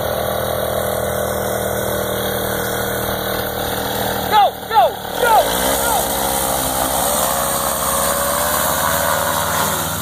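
Paramotor engine and propeller idling steadily, then a few short loud shouts about four and a half seconds in, after which the engine revs up and holds at a higher throttle for the launch run.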